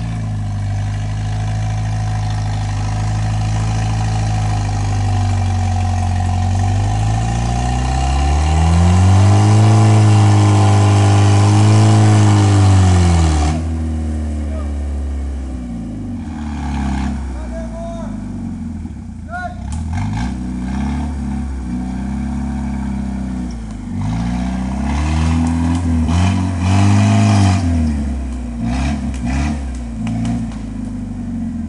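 Jeep Wrangler engine revving up and down under load as it drives off a tilted side-slope where the trail edge gave way. The longest, loudest rev runs from about seven to thirteen seconds in, followed by several shorter rises and falls.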